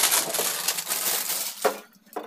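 Clear plastic wrapping crinkling and rustling as a new kerosene stove is handled and unwrapped, dying away near the end with a single knock.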